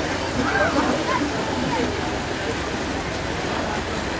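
Steady rush of water and wind noise heard from aboard a moving boat on a lake, with faint voices in the background.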